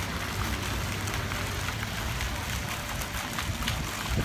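Steady splashing and trickling of a fountain's water jet falling into a shallow pool, over a low steady rumble.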